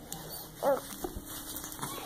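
A baby gives one brief high-pitched whimpering squeak about two-thirds of a second in, while being spoon-fed. A soft knock follows about half a second later.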